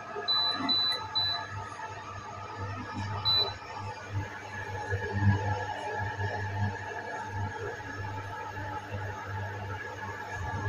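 Pensonic induction cooker's control panel beeping as its dial is turned: three short high beeps in quick succession in the first second and one more about three seconds in. Under them runs the cooker's steady electrical hum.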